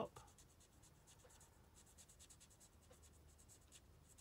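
Faint, repeated scratchy strokes of an alcohol ink marker's brush nib moving over card as a drawing is coloured in.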